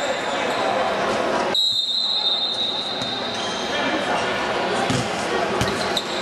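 Indoor futsal game: ball strikes and thuds on the hard court against the chatter of spectators in a large hall. About a second and a half in, a high steady tone sets in suddenly and lasts under two seconds.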